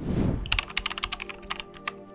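A short whoosh, then a rapid run of computer-keyboard typing clicks lasting about a second and a half: a typing sound effect for an on-screen title being typed out, over soft background music with steady held tones.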